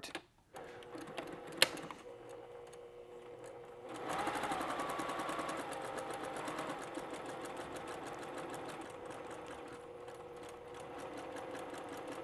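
Electric domestic sewing machine stitching a seam through cotton fabric. It starts quietly with a single click about a second and a half in, then picks up speed about four seconds in and runs at a steady, rapid stitching rhythm.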